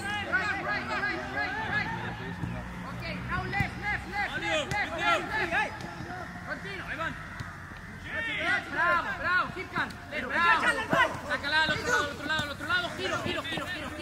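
Several men's voices shouting and calling over each other during a football drill, with a few sharper calls in the second half.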